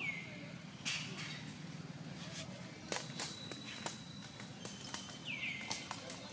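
High, short chirps that fall in pitch come one at the start and two close together near the end, with a thin steady high note in between. Scattered sharp clicks and light rustling run through it, over a steady low background hum.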